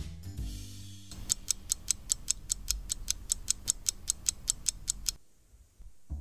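Clock-ticking sound effect, a fast even run of sharp ticks, about five a second for about four seconds, as the clock hands are wound round to a new time, over soft background music. The ticking stops about a second before the end.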